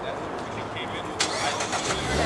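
A car engine starting with a sudden burst about a second in, over the murmur of people talking.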